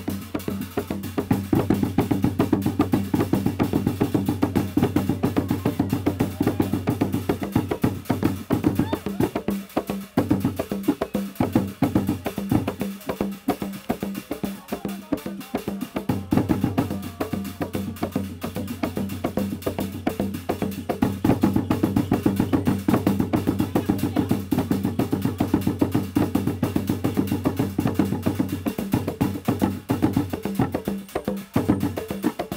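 A traditional Zanzibari ngoma ensemble of hand drums playing a fast, dense rhythm. The low part drops away for a few seconds around the middle, then the full drumming returns.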